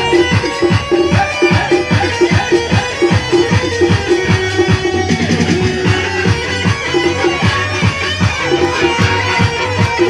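Live band playing an instrumental break in a Bengali folk song: a fast, steady drumbeat under keyboard and other melody lines, with no singing.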